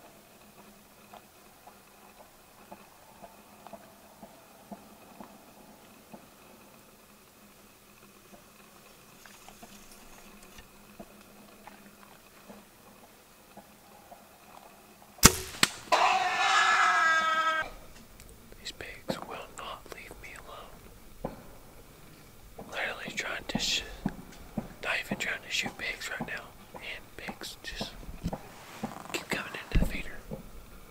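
A single sharp crack of a bowshot, then a feral hog squeals loudly for about two seconds as the arrow hits it. Hushed, excited whispering follows.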